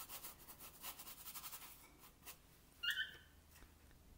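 Filbert brush stroking acrylic paint onto canvas in a run of quick, faint scratchy strokes that die away about two seconds in. A short, high squeak about three seconds in.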